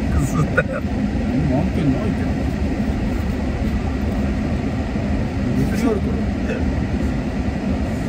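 Steady low rumble of a car heard from inside the cabin, with quiet voices over it.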